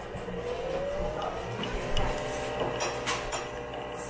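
Nespresso VertuoLine coffee machine brewing into a mug: a steady mechanical whir from the machine, with a hum that rises in pitch within the first second or two.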